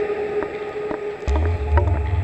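Eurorack modular synthesizer music generated from a houseplant's biodata through an Instruo Scion module. A held mid tone and short pinging notes play, and a deep bass drone comes in suddenly just over a second in.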